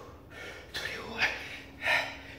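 A man breathing hard and fast from the effort of push-ups: short, noisy, forceful breaths in and out, with the loudest a little past a second in and again near the end.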